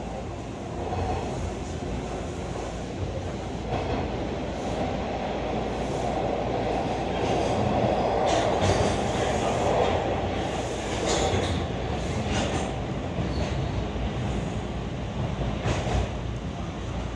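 Bombardier T1 subway train running through a tunnel, heard from inside the car: a steady wheel-and-rail rumble that builds toward the middle, with scattered clicks from the track.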